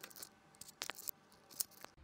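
About half a dozen light clicks and knocks from a plastic pour-over coffee dripper, a wooden lid and a jug being handled, the loudest a little past halfway.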